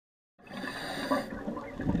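Underwater bubbling and water noise, as from divers' exhaled air, starting abruptly about half a second in after silence.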